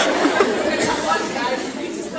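Several voices talking over one another in a large, echoing hall, with no single voice standing out.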